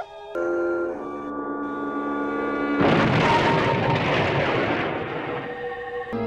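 Held electronic music tones, then about three seconds in a loud rushing, explosion-like science-fiction sound effect that lasts a few seconds and fades.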